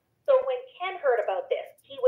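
A person talking, after a brief moment of silence at the start.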